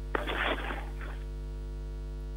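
Steady electrical mains hum on an open telephone link that carries no answering voice, with a short burst of noise in the first second.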